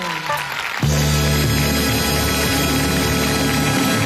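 Studio orchestra ending a song: a brief sliding figure, then about a second in a loud, full final chord that is held.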